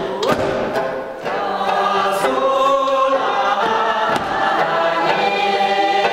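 A group of voices singing a Tibetan circle-dance song together, the sung lines held and gliding in pitch.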